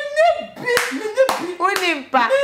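A woman's high, drawn-out voice, gliding in pitch without clear words, broken by about three sharp hand claps in the second half.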